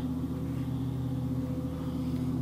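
Steady low mechanical hum from room machinery, with several held tones that do not change.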